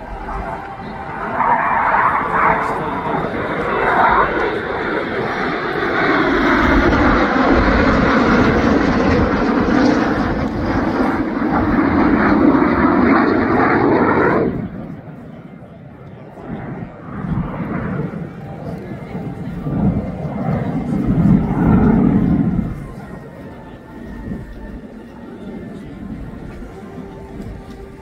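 A formation of jet aircraft flying past: a loud engine roar whose pitch sweeps downward as they pass, which cuts off suddenly about halfway through. A second, quieter jet pass follows.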